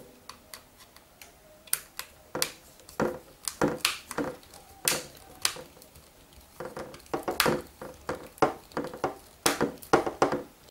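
Small screwdriver turning screws into a small plastic housing, with irregular clicks and scrapes of metal tool on plastic and the box being handled.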